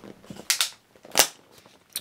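Handling a drink of water: a short double crackle about half a second in, then a sharp snap just past a second, the loudest sound here.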